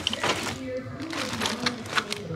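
Clear plastic zip-top bags crinkling and rustling as they are handled, with small clicks and knocks, over a quiet voice in the background.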